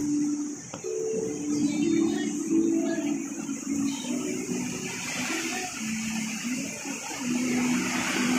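Heavy typhoon rain falling steadily, a continuous hiss, with faint talking in the background.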